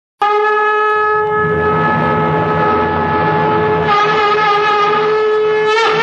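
A single long, loud note blown on a wind instrument. It starts abruptly, holds one steady pitch, wavers slightly from about four seconds in, and bends in pitch just before it stops.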